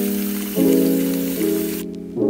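A steady rush of pouring water over background piano music; the water cuts off suddenly near the end.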